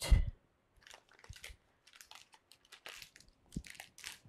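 A dull bump at the start, then faint, scattered crinkling and crackling of a plastic bag of dry white beans as it is picked up and handled.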